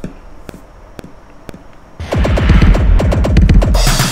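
Drum-machine beat played from the Jailhouse kit samples in Akai MPC Essentials software: a few soft ticks, then about halfway in a loud, deep swirling "vortex tornado" sample that cuts off abruptly.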